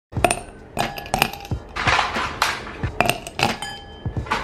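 Ice cubes dropping into a clear glass: a quick, uneven run of sharp clinks, each with a brief glassy ring, and rattling as the cubes settle against each other.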